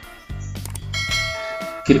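Subscribe-button sound effect: a short click, then a notification-bell chime about a second in that rings for nearly a second, over quiet background music.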